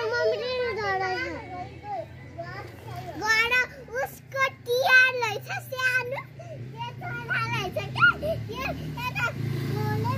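Young children's high-pitched voices chattering and calling out in short bursts of speech.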